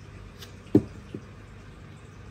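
Low room tone broken by a short, soft thump about three-quarters of a second in and a fainter one a moment later.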